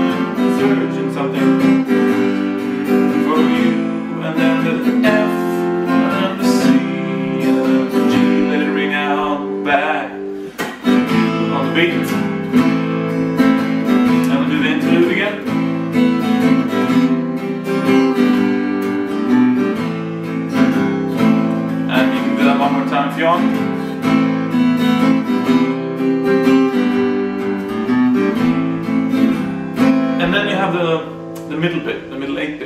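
Nylon-string acoustic guitar strummed steadily through a repeating F–C–G–A minor chord progression, with a brief drop in level about ten seconds in.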